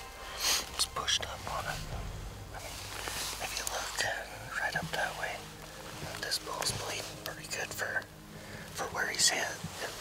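People talking to each other in low, hushed whispers, in short broken phrases.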